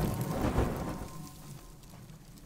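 Film sound effects of a meteorite impact dying away: a deep rumble with a second thud about half a second in, then fading, with crackling like burning embers. The tail of a music cue fades out in the first second.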